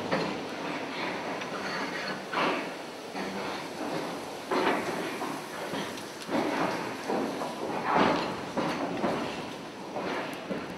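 A lift car travelling in its shaft: a rattling mechanical noise that surges about every two seconds, loudest near the end.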